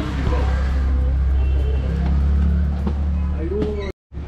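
A steady low rumble with faint voices over it, cut off abruptly just before the end.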